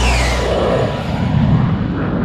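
Jet fly-by sound effect: a whoosh that falls in pitch in the first half second, then a low rumble that slowly fades. The music's last chord cuts off as the whoosh begins.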